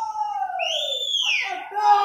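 A person's voice in long, high, sliding cries that rise and then fall in pitch, two overlapping in the first half and a shorter one near the end, with no beat under them.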